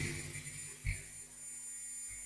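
Pause in a man's talk, leaving the steady electrical hum and faint high-pitched whine of the microphone and sound system, with one soft low thump about a second in.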